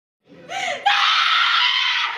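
A woman's long, loud scream of grief, acted on stage as she mourns over a body draped in a flag. It swells in briefly and becomes a full, steady, high cry just under a second in.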